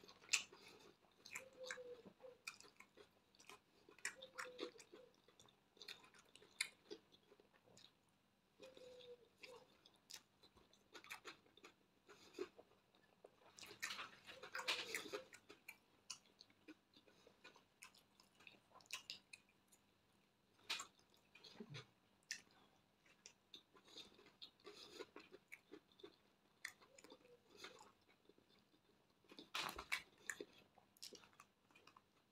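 A person chewing soft bread with fried egg close to a clip-on microphone: quiet, irregular wet mouth clicks and smacks, busiest around the middle.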